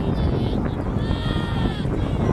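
Spectators yelling during a horse race: long, high-pitched drawn-out cries, the longest from about a second in to near the end, over wind rumbling on the microphone.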